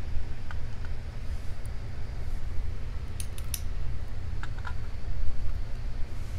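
A few faint, light clicks of metal tweezers and small brass lock pins against a plastic pin tray as the pins are removed from the cylinder and laid out, over a steady low hum.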